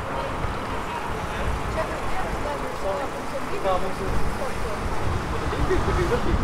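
Town-centre street ambience: a steady low rumble with the indistinct voices of passers-by, which grow more frequent in the second half.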